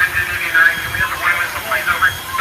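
Indistinct voices of people talking, over a low rumble.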